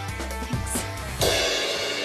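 Background music with a steady bass line. A little over a second in, a loud cymbal crash cuts in as the bass stops, and the cymbal rings on and slowly fades.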